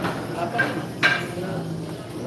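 Three sharp clicks with a short ring, the last about a second in the loudest, over low voices in the room.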